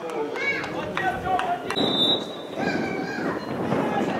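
Footballers shouting to one another on the pitch during play, several loud calls in a few seconds, with a few sharp knocks and a short high tone about halfway through.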